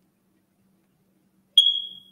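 A single high-pitched beep about one and a half seconds in, starting with a click and fading out over about half a second.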